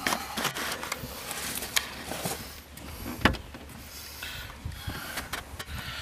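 Light clicks and knocks from hands handling parts around an exposed car gear-shifter assembly, with two sharper clicks about a second and a half apart, over low background noise.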